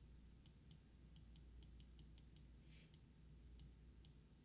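Faint clicking at a computer: about a dozen sharp clicks at irregular intervals, with a brief soft rustle near the three-second mark, over a low steady hum.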